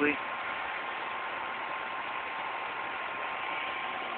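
Steady, even hiss with a faint, constant high hum running under it, and no distinct event.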